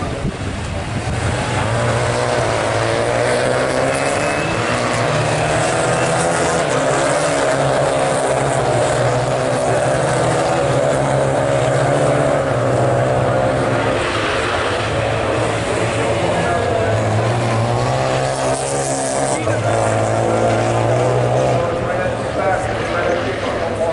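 Renault Clio rallycross cars racing on track, their engines revving, the pitch stepping up and down through gear changes as the cars go through the corners.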